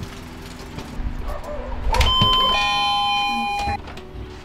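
Two-note 'ding-dong' doorbell chime about two seconds in: a higher note, then a lower one held for about a second.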